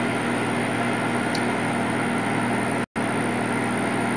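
Steady machine hum with a faint high whine, such as laser-cutter exhaust fans or pumps make, cutting out completely for an instant just before three seconds in.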